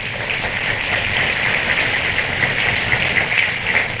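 A large audience applauding steadily, heard on an old vinyl LP recording. The clapping gives way to the speaker's voice near the end.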